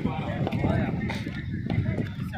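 Faint background voices of people talking at a distance over steady low outdoor noise, with no clear bat or ball sounds.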